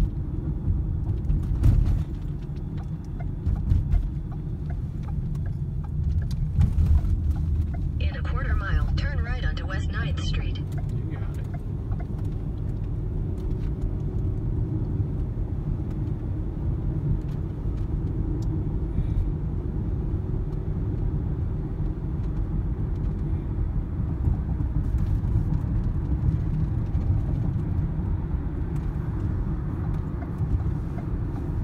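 Road noise inside a moving car's cabin: a steady low rumble of tyres and engine at highway speed.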